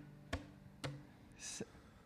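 Faint clicks about twice a second over a low steady hum: the beat of a backing track starting up for a song, in a rhythm that is not the intended one.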